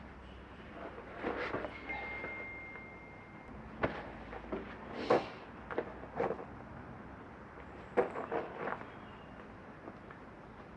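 Scattered knocks and clanks of metal parts being handled while a tractor-mounted hedge cutter's linkage and PTO shaft are fitted by hand: about eight separate short knocks, with a cluster of them in the second half.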